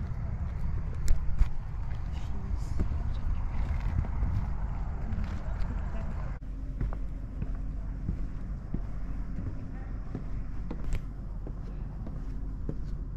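Outdoor walking ambience: a steady low rumble of wind on the camera microphone, with footsteps and faint voices in the background. A few sharp knocks come about a second in, and about six seconds in the background changes abruptly and the higher sounds thin out.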